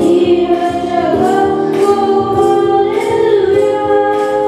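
A boy singing a Telugu Christian worship song into a microphone, over sustained electronic keyboard chords that change about every second.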